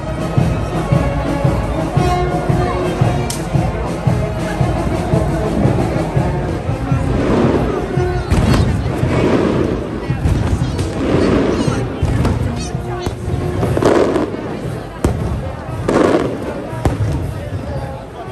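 Fireworks banging and crackling over the chatter of a large street crowd, with music mixed in.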